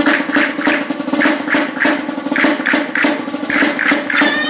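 Folk band percussion playing a steady beat of about two to three strokes a second, with no melody instruments yet.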